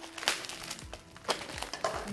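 A thin plastic mailer bag crinkling in the hands as it is cut open with a knife, a few short sharp crackles, over faint background music.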